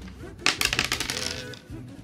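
Two small dice thrown onto a hard tabletop, clattering and tumbling in a quick run of clicks that lasts about a second.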